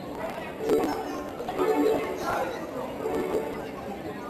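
Indistinct human voices talking in short, broken phrases.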